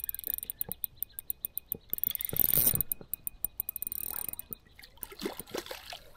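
A hooked bream splashing at the water's surface as it is brought to the bank, with a short burst of splashing about two seconds in, over rapid ticking from the Daiwa spinning reel as line is wound in.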